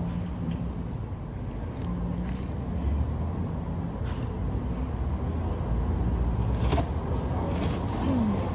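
A steady low background rumble with a faint hum, with a sharp click near the end.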